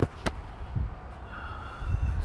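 Gale-force wind buffeting a bivvy tent: a steady low rumble, with two sharp knocks at the start from a hand grabbing the camera.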